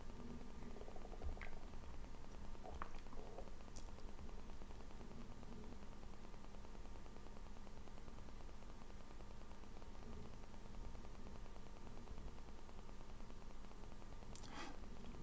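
Quiet room tone: a steady low hum and faint hiss, with a few faint ticks in the first four seconds.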